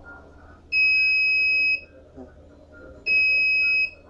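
Electronic buzzer on the phone-controlled robot car sounding two steady, high-pitched beeps: the first about a second long starting just under a second in, the second slightly shorter near the end.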